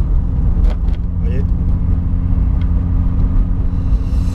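Venturi 260LM's turbocharged V6, heard from inside the cabin, running steadily at low revs as the car cruises gently.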